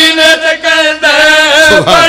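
A man chanting a devotional verse into a microphone, drawing out long wavering notes with a few short breaks for breath.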